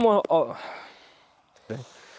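A man's voice speaking in Polish that trails off early on, then a short syllable near the end, with faint background between.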